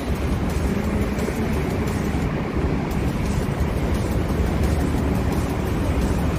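Steady low rumble of outdoor city background noise, with no single event standing out.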